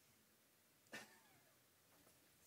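Near silence: room tone, with one brief soft sound about a second in.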